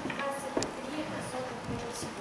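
A woman speaking in a lecture room, with a sharp click about half a second in.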